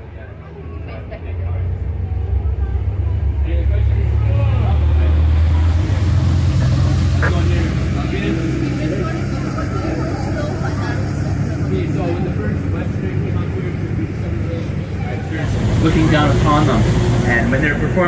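A tour boat's engine drones steadily, heard from inside the boat. The drone grows louder over the first few seconds as the boat gets under way. Indistinct voices run over it and are strongest near the end.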